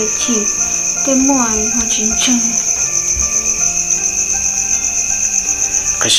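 Crickets chirping in a steady, fast, high-pitched trill. Under it runs soft background music with held notes, and a wavering melody sounds over the first couple of seconds.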